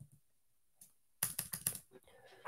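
Typing on a computer keyboard. After a near-silent pause with a faint click or two, a quick run of keystrokes begins a little over a second in.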